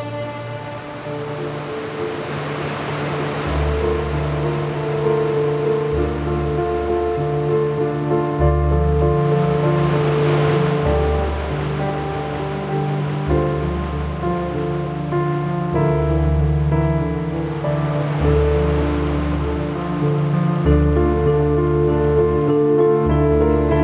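Slow, sustained music for a skating routine: long-held low notes and chords that change every couple of seconds. A hissing wash like surf swells and fades over it three times.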